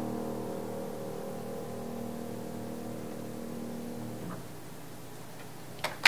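Closing chord of a piano piece held with the sustain pedal, ringing out and fading away until it dies out about four seconds in. Applause breaks out just before the end.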